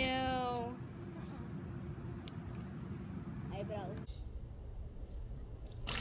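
A child's voice holds a short note at the start over low steady background noise; near the end comes a sudden spray as a mouthful of water is spat out.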